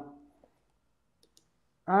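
A short pause between a man's sentences: near silence with a few faint clicks about a second in, and his voice starting again near the end.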